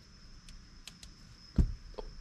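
Hands working a multimeter pin probe on a wiring connector: a few faint light ticks, then one dull thump about one and a half seconds in.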